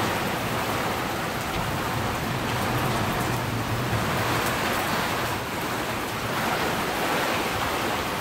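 Heavy tropical-storm rain pouring down as a steady, even hiss.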